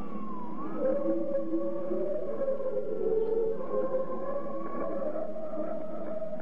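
Sustained, wavering musical tones received off-air over shortwave AM, narrow and muffled. The notes step in pitch, and a tone near the start dips and rises.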